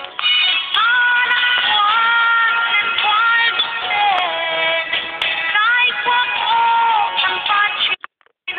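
Music: a song with a sung voice holding long notes that slide from one pitch to the next, over accompaniment.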